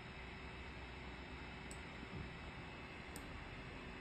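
Quiet room tone, a steady hiss, with two faint sharp ticks about a second and a half apart.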